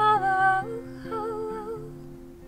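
A woman's voice singing two wordless, wavering phrases, the first louder than the second, over a steadily played acoustic guitar.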